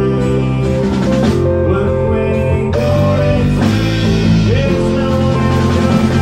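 Live indie rock band playing an instrumental passage, with guitars, keys, electric bass and drums. About halfway through, the band suddenly gets fuller and brighter.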